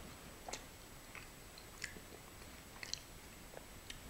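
Faint chewing of a mouthful of soft microwaved mini cheeseburger on a bun: a few small mouth clicks, about one a second.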